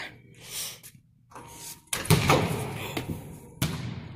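A basketball shot from the balcony bangs sharply against the hoop about two seconds in, the bang ringing on in the big gym's echo, then another hard impact comes near the end.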